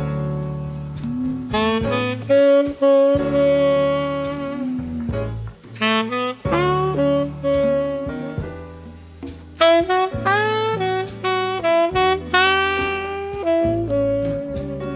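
Instrumental background music in a jazz style: a saxophone plays a melody of long held notes over a bass line.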